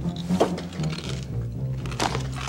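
Background music: a low bass line stepping from note to note, with sharp percussive hits over it.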